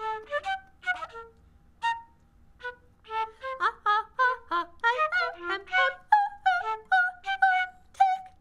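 Flute playing a line of short, separate notes with a wavering pitch, sparse at first and then quicker and busier from about three seconds in.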